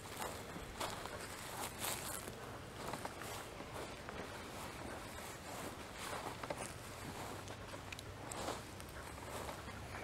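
Faint footsteps crunching slowly across dry grass, an uneven step roughly every second.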